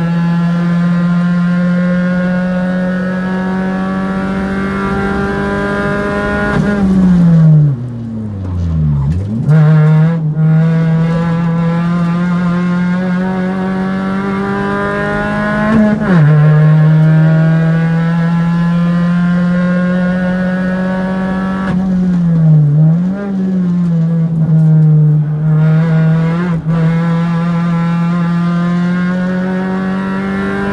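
Race car engine heard from on board under hard driving, its note climbing slowly through a gear. Around 7–9 s in and again near 22–23 s the pitch dips steeply and jumps back in quick blips, the sound of downshifting with throttle blips while braking for corners; about 16 s in the pitch drops sharply as it changes up.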